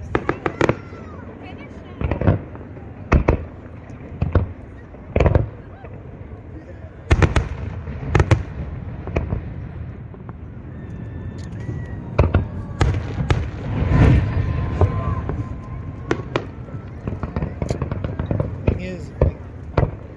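Aerial fireworks shells bursting: sharp booms about a second apart at first, then a dense run of crackling bursts in the middle, with scattered bangs near the end.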